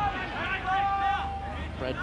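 A man's voice making drawn-out sounds, with one note held for about a second in the middle, over a steady low hum and faint crowd noise in a television sports broadcast.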